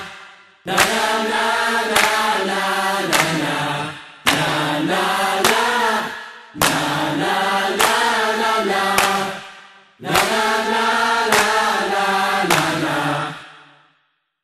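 The closing bars of a pop song: layered vocal harmonies over a light beat in short repeated phrases, each starting sharply and dying away. The last phrase fades out about 13 seconds in.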